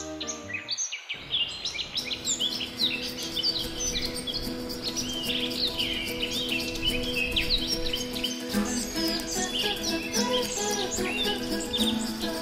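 Many birds chirping and singing together, over soft, sustained background music whose held notes shift to a new chord about eight and a half seconds in.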